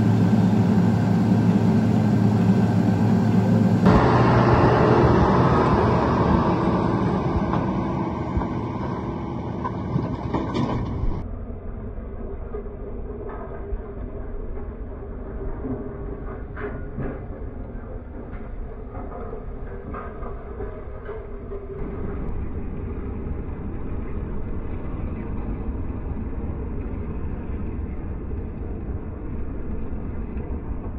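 Case IH Quadtrac tractor pulling a Quivogne disc cultivator through stubble: a steady low engine rumble with the clatter of the implement working the ground. The sound changes abruptly about four seconds in and again near the eleven-second mark, then settles into a quieter steady rumble with faint ticks.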